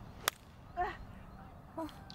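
A 7-iron striking a golf ball off the tee: one sharp click about a quarter second in. Two short calls follow, about a second apart.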